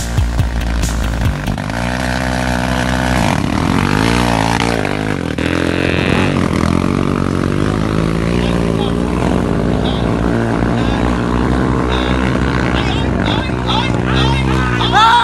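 ATV engine revving hard as the quad drags through a mud pit, its pitch rising and falling, with people's voices over it.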